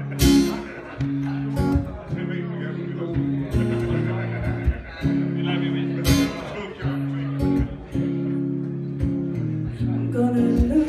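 Acoustic guitar strumming chords in an instrumental passage of a live song, heard through the PA. Chords change every second or two, each marked by a hard strum.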